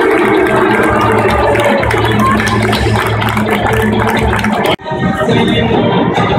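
Loud music playing over a stadium's sound system. About five seconds in it breaks off suddenly at an edit cut, and another stretch of loud music follows.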